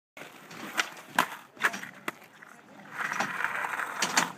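Inline skates on a skate ramp: four sharp knocks of the skates against the ramp, about half a second apart, then the wheels rolling over the surface near the end.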